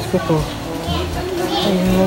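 Voices of adults and children talking and calling out.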